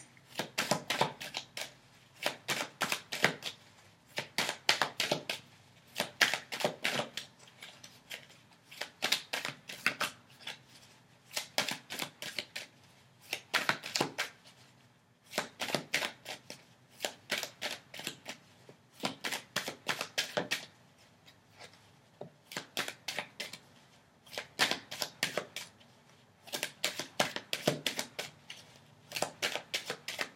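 A Rider-Waite tarot deck being shuffled by hand, cards slipping and slapping from one hand to the other in quick runs of clicks a second or two long, repeated every couple of seconds with short pauses between.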